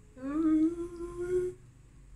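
A woman humming one long, delighted "mmm" lasting about a second and a half, its pitch rising a little at the start and then held.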